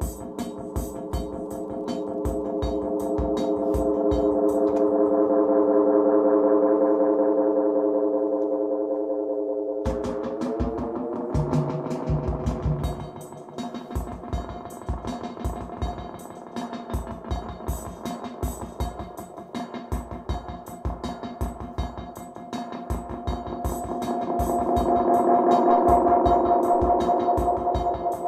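Korg KR-55 drum machine beat played through a Roland RE-201 Space Echo tape delay. The echo repeats build into a sustained, swelling drone of tape-echo feedback. Its pitch bends up about ten seconds in as the knobs are turned, and it swells again near the end.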